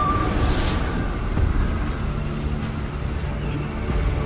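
A dense, steady low rumble of film sound effects for a magical blast, with a brief whoosh about half a second in and a low sustained drone coming in about halfway through.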